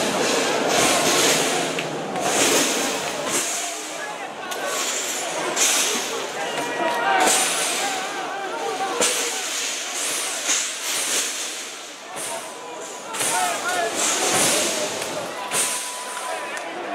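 Street fight between football fans: men shouting and yelling, with many short harsh crashes and clatters of thrown bottles and objects hitting the pavement and a bus.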